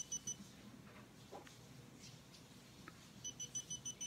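Xiaomi Yi action camera beeping through its clear waterproof case. A quick run of short, high beeps comes right at the start as recording is stopped. A longer, evenly spaced run of about six beeps comes near the end as the camera is switched off.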